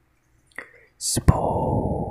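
Close-microphone ASMR whispering and mouth sounds: a small click, a short high hiss about a second in, a sharp click, then a long breathy whisper.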